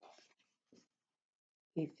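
Faint rustle of a paperback picture book being handled and lowered, in the first second. Near the end a woman starts to speak.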